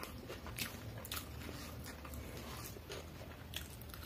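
Close-miked eating of chow mein noodles: mouth and chewing sounds, with a few sharp clicks of a fork against the plate as the noodles are gathered, over a low steady hum.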